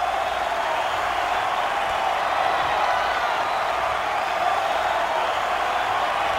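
Live concert audience applauding steadily at the end of a rock song: an even wash of clapping from a large crowd.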